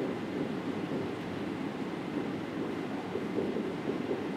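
Steady low hiss of room noise in a lecture room, without speech.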